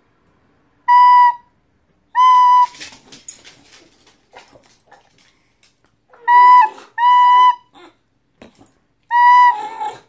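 An old recorder blown in five short, high notes, all on about the same pitch, with gaps between them. Under some of the later notes an English bulldog gives low whining, howl-like sounds along with the recorder.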